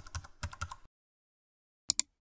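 Computer-keyboard typing sound effect: a quick run of keystrokes lasting under a second, then a double mouse click near the end as the search button is pressed.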